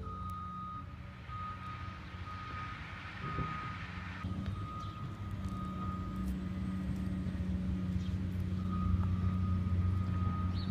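A vehicle's reversing alarm beeping at one high pitch, about once a second, over a steady low engine hum that grows a little louder toward the end.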